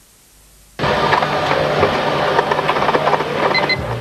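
A brief gap of near silence, then, from about a second in, a printer feeding out a strip of continuous paper: a dense, steady mechanical clatter over a low hum, with two short high beeps near the end.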